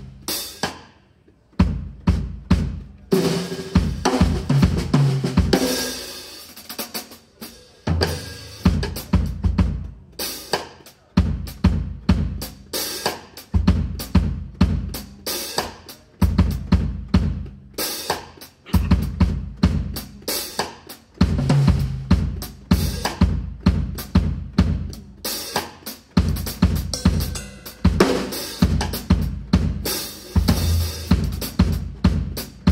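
Acoustic drum kit played solo: kick drum, snare, toms and cymbals in a groove-based solo. It comes in short loud phrases with brief breaks between them, the first a little after the start.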